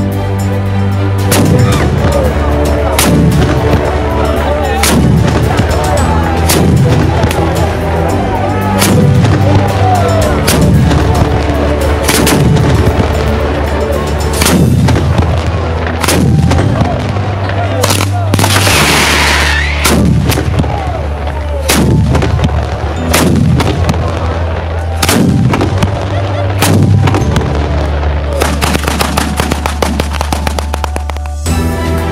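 Rapid, dense bangs of a San Severo-style firecracker batteria, chained ground firecrackers going off, laid over background music with a steady deep bass and regular booming beats. A brief loud hiss comes about two-thirds of the way through.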